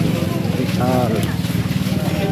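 A small engine running steadily at a low, even pitch, with a brief voice about a second in.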